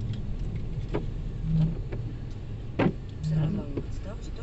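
Steady low rumble inside the cabin of a Mercedes-Benz 220d car, with a sharp click near three seconds and brief low voice sounds toward the end.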